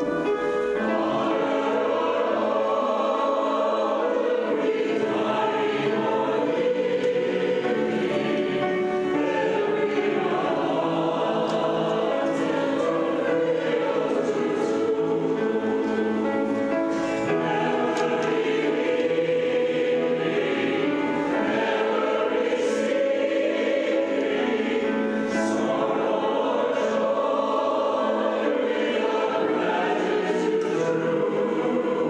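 Mixed church choir of men and women singing an anthem, steady and sustained.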